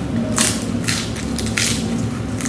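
Crisp crunching of a fresh lettuce leaf being bitten and chewed, three sharp crunches about half a second apart, over a steady low hum.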